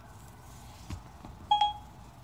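A short electronic beep from the iPhone, about one and a half seconds in: a single tone with a few higher overtones, lasting about a third of a second. A faint knock from handling the phone comes just before it.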